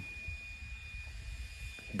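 Quiet outdoor background: a low steady rumble with a faint, thin, steady high whine.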